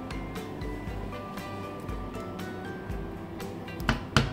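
Instrumental background music with held notes that change every second or so.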